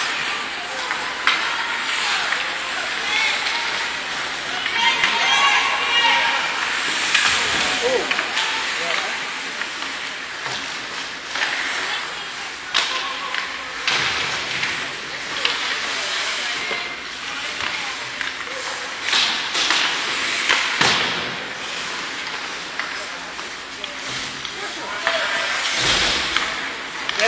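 Ice hockey game heard from the stands: a steady hiss of skates on the ice under the background chatter of spectators, with scattered sharp knocks of sticks and puck.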